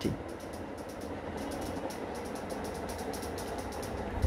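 A steady low mechanical hum in the background, even throughout.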